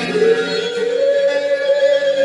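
Live band music: plucked guitar under a long held note that slides up at the start and then holds steady.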